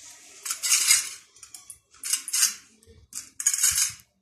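Stainless steel bowl scraping and rattling on a stone floor as kittens paw and push it about, in three bursts about a second apart.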